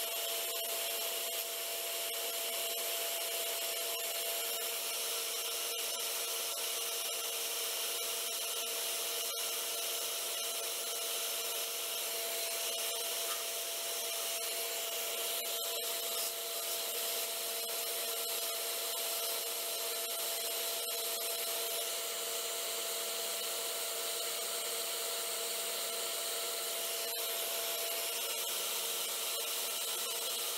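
Wood lathe running with a steady motor whine while a hand-held turning chisel cuts the spinning olivewood blank, a constant scraping hiss of the tool shaving the wood.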